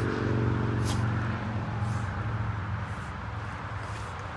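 A low, steady motor hum made of several pitched tones, easing off a little after about two and a half seconds. Faint brief splashes come through about once a second as a dog paddles through pool water.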